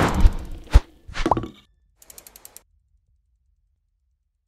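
Designed sound effects for a logo animation: a swell into a deep thud, a sharp hit, and a short swoosh with a gliding tone, then a quick run of about six soft ticks two seconds in.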